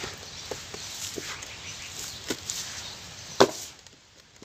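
Lumps of dry charcoal ash and dust crumbling and falling onto a gritty pile, giving a handful of sharp crunching impacts over a soft gritty rustle. The loudest impact comes about three and a half seconds in.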